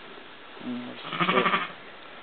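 A sheep bleats once, loud and quavering, about a second in.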